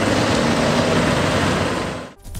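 Steady engine and street noise from a flatbed tow truck whose loader crane is lifting a wrecked car, dropping away near the end.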